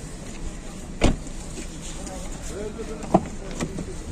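Two sharp knocks, a loud one about a second in and a smaller one near the end, as a car's open door and interior are handled, with faint voices behind.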